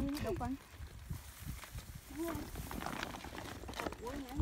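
Brief snatches of quiet talk over a faint steady hiss, with low irregular thumps.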